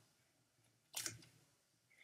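Near silence, with one short crackle about a second in from a plastic soda bottle being handled.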